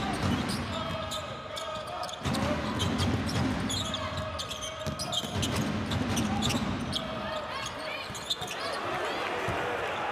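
A basketball being dribbled on a hardwood court during live play, a series of sharp bounces, mixed with players' voices calling out.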